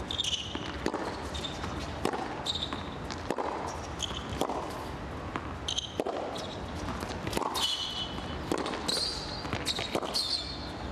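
Tennis rally on a hard court: sharp racket strikes and ball bounces in a quick irregular rhythm, with players' shoes squeaking on the court surface, loudest near the end.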